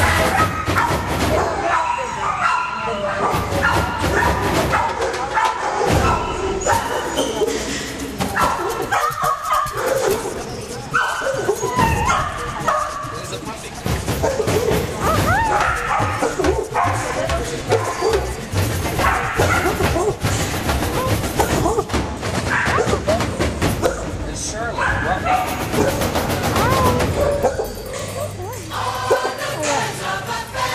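Dogs barking in shelter kennels, mixed with a music soundtrack that plays throughout.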